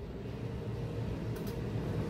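Over-the-range microwave oven running: a steady low electrical hum with fan noise, growing slightly louder.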